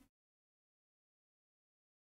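Dead digital silence: the sound track is cut to nothing.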